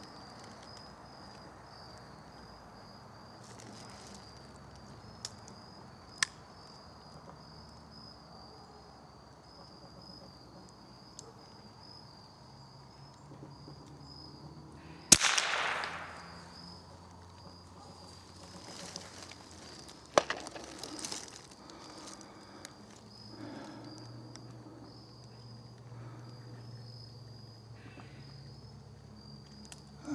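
A single .22 rimfire shot from a Glenfield/Marlin Model 60 about halfway through, sharp and ringing away through the woods. A steady, pulsing chorus of insects runs underneath.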